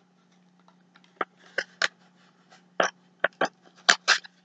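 Handling noises from a stick of grip wax and its small cardboard box: about seven short, light clicks and taps, scattered through the second half.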